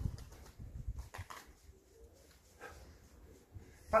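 Quiet garden background with a bird cooing faintly, after a brief low rumble at the start.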